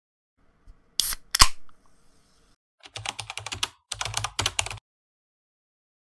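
Typing on a computer keyboard: two sharp key clicks about a second in, then two short runs of rapid key clicks around three and four seconds in.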